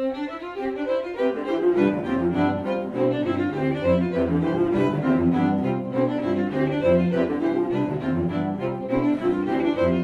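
String quartet (two violins, viola and cello) playing live in short, quick notes. The upper instruments start together, and the cello enters below them after nearly two seconds.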